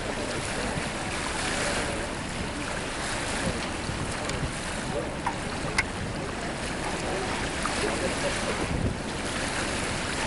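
Steady wind noise rushing on the camcorder microphone beside open water, with one sharp click a little past halfway.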